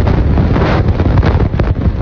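Wind buffeting a phone's microphone in irregular gusts, over the loud, steady rush of water pouring through the open spillway shutters of a dam.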